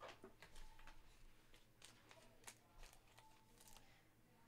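Near silence, with faint scattered small clicks and ticks.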